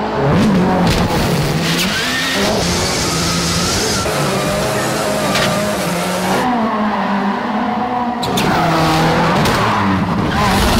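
Ford Fiesta rally car's turbocharged four-cylinder engine revving up and down hard while drifting, with tyres squealing and skidding. A few sharp cracks are scattered through.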